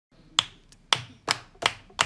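A single person clapping out a beat: five sharp hand claps in two seconds, a little uneven at first and then about three a second.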